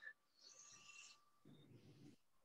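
Near silence, with a faint, brief breathy hiss about half a second in: a deep breath being drawn in.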